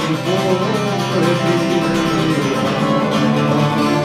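Cretan traditional music on plucked strings: an acoustic guitar strummed under laouto lutes played with a plectrum, a steady ensemble passage.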